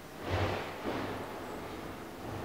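Trash collection going on outside: a garbage truck's low engine hum with two swells of rushing noise, about half a second and a second in.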